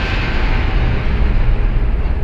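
Loud cinematic logo-intro sound effect: a deep, steady rumble under a wide hiss.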